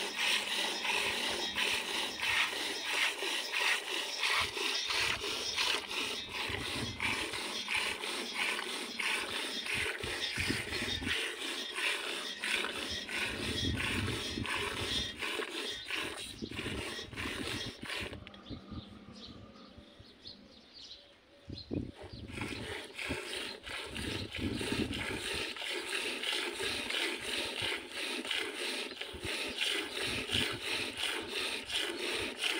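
Milk squirting into a steel bowl as a camel is milked by hand, in quick rhythmic spurts, several a second. The spurts fall away for a few seconds about two-thirds of the way through, then start again.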